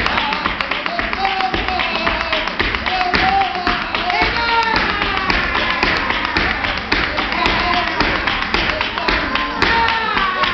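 Live flamenco bulería: a male cantaor singing long, bending melismatic lines over flamenco guitar, with a steady stream of sharp palmas handclaps and the dancer's heel-and-toe taps.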